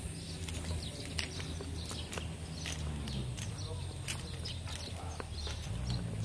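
Steady wind rumble on a phone's microphone, with scattered light clicks and taps as the person holding it walks.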